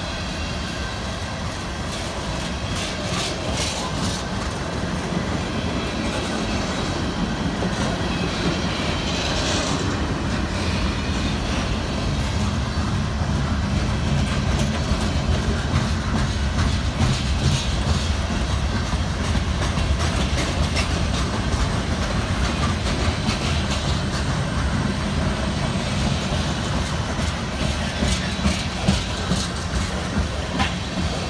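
Freight train of tank cars and boxcars rolling past close by: a steady rumble of steel wheels on rail, with clicks scattered through it as the wheels cross rail joints, growing slightly louder.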